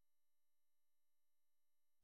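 Near silence, with only very faint steady tones underneath.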